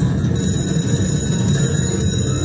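IGT Star Goddess video slot machine playing its free-games bonus music from the cabinet speakers, steady and loud, while a bonus win is tallied.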